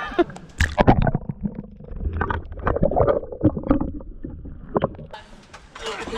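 Kayak being paddled close to the microphone: irregular knocks and clunks of the paddle and hull, with low water rumble. About a second before the end, a hiss of splashing water builds up.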